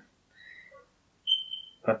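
A short, steady, high whistling tone of about half a second, preceded by fainter thin whistly tones.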